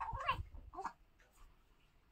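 A baby making a few short cooing sounds in the first second, over soft low thumps.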